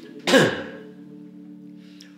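A man clears his throat once, sharply, about a third of a second in, during a pause in recited prayer. Soft background music with steady held low notes continues underneath.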